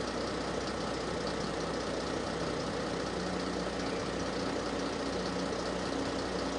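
Outboard motor of a small inflatable rescue boat running steadily under way, its hum wavering slightly in pitch.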